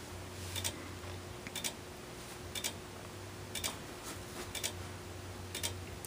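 Fire alarm strobes giving a faint click with each flash, about once a second, often as two clicks close together, over a low steady hum.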